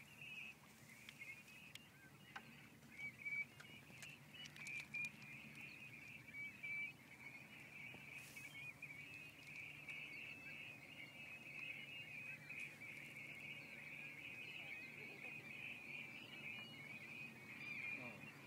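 Faint, continuous chatter of a distant flock of birds calling over the water, steady throughout, with a few light clicks in the first few seconds.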